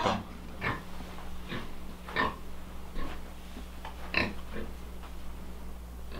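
Pigs grunting: about six short grunts spaced irregularly, over a faint steady hum.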